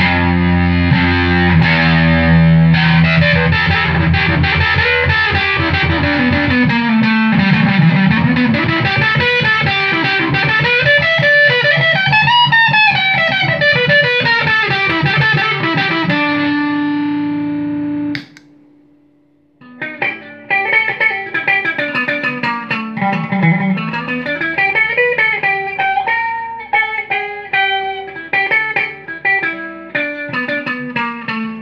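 Electric guitar played through a fuzz pedal built on the Woolly Mammoth circuit with Russian germanium transistors, giving a thick distorted tone. Runs of notes slide up and down. The playing cuts off sharply about 18 seconds in and resumes after a short gap.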